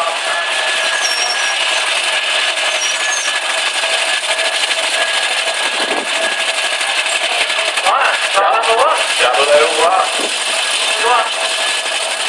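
Indistinct voices talking over a steady background noise that carries a faint, unchanging tone. The talking is clearest in the second half.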